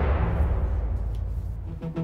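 Dramatic background score: a deep low rumble with a hissing swish that fades away over the first second.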